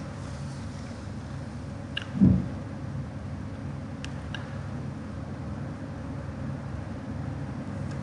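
A steady low hum, mechanical in character, with a couple of faint clicks and a brief low thump about two seconds in.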